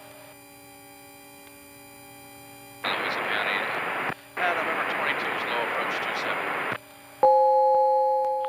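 Cockpit intercom audio: a low steady hum, then about four seconds of rushing radio-channel noise with a short break in it, then a loud steady two-note tone starting near the end.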